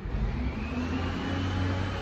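Garbage truck engine running: a steady low hum that swells suddenly at the start, with a faint high whine rising and then holding over it.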